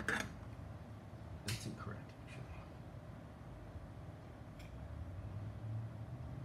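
A few short clicks and knocks from small tools and wires being handled on a workbench, the loudest right at the start and another about a second and a half in, over a steady low hum.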